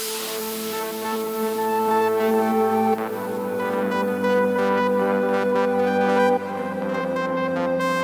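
Breakdown of a progressive trance track: sustained synthesizer chords with no kick drum, changing chord about three seconds in and again a little past six seconds.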